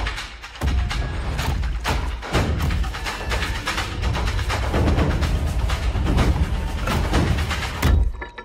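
Dramatic trailer score: a deep, steady low bass with rapid percussive hits over it, dipping briefly just under a second in.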